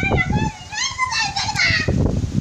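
A child's high-pitched voice calling out.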